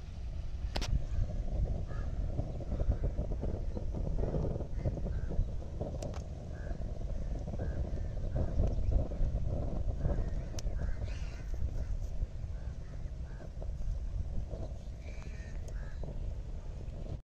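A wood fire burning under a pan of fish boiling in seawater, with a steady low rumble, a few sharp crackles, and crows cawing repeatedly in the background.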